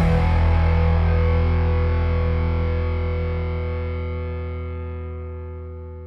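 Background rock music: a distorted electric guitar chord left to ring, slowly fading away.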